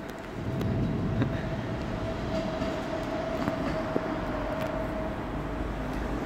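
DB ICE 4 electric high-speed train pulling away from the platform, its running gear rumbling with a steady whine that fades out near the end, and a few sharp clicks from the wheels on the track. The sound swells about half a second in.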